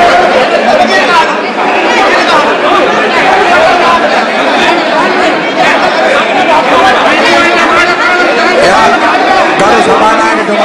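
A crowd of men shouting and talking over one another without a break, during a scuffle among them; no single voice stands out.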